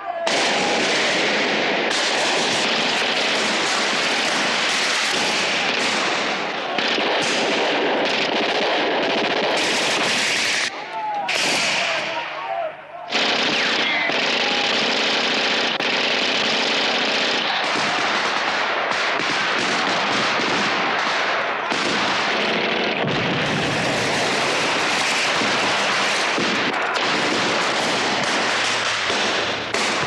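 Sustained automatic gunfire from rifles and machine guns in a firefight, dense and continuous, with a short lull about eleven seconds in.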